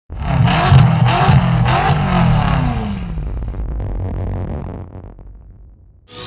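Car engine revving hard a few times, its pitch rising and falling with each rev, then fading away over the last few seconds.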